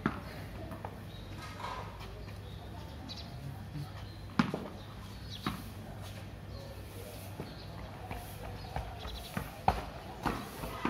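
Several sharp knocks of a cricket ball and bat on a hard tiled floor, the loudest about four and a half seconds in and another near the end, over a steady low hum.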